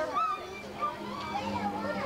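Several children's voices chattering and calling over one another, with a steady low hum coming in just after the start.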